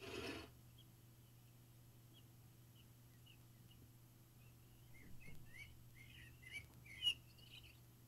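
A brief rustle at the start, then faint bird chirps, sparse at first and more frequent from about five seconds in, with one sharp tick near the end.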